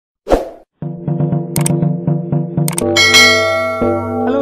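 Channel intro jingle: a short hit, then music with a quick, steady plucked rhythm and bright bell-like dings. It swells into a ringing chime in the last second.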